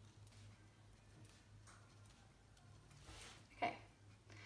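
A few faint, irregular ticks of a pencil tip tapping dots onto paper along a ruler, over a low steady hum.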